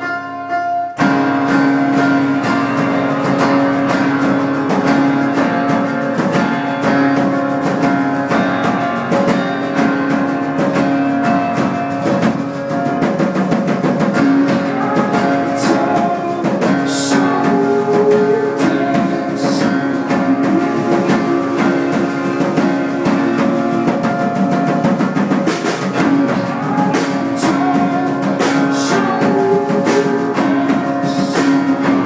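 Live band music: a strummed acoustic guitar leads, with keyboard, drums and electric guitar. A held keyboard chord gives way about a second in as the full band comes in.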